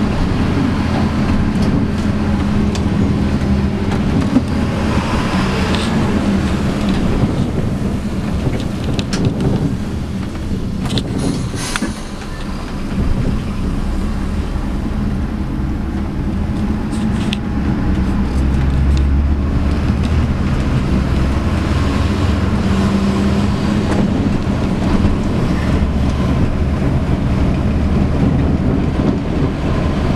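Mercedes-Benz O-500M coach's diesel engine running under way, heard from the driver's end of the bus along with road and body noise. The engine sound dips briefly about twelve seconds in, around a gear change, then runs louder and deeper from about eighteen seconds.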